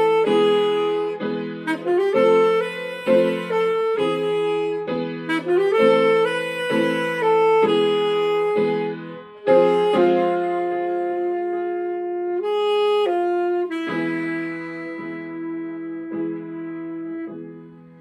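Alto saxophone and grand piano playing a slow, somber jazz tune. The notes move in a steady rhythm at first, then settle into long held notes about halfway through, and the sound tapers off toward the end.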